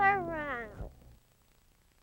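A drawn-out, meow-like cry that falls in pitch and ends within the first second.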